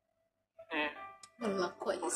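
A faint held music tone ends at the start, then about half a second of silence, then dialogue in Thai from a TV drama begins.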